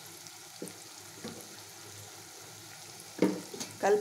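Chopped ridge gourd and boiled eggs frying quietly in an aluminium kadai as chilli powder is spooned in, with a few faint spoon strokes. A louder burst of spoon stirring against the pan comes about three seconds in.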